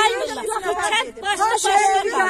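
Women talking, several voices at once.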